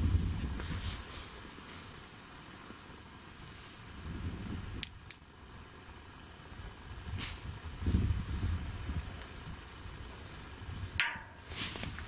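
Low rumbling movement and handling noise, with two sharp knocks close together about five seconds in and a brief rushing noise near the end.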